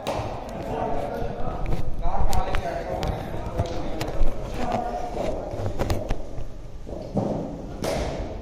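Indistinct voices echoing in a large indoor hall, with scattered sharp knocks and thuds.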